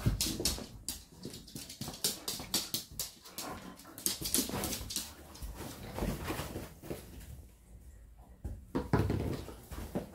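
A husky-like dog moving about close to the microphone as it is petted, making a run of short, irregular noisy sounds of breathing, sniffing and rustling against the couch.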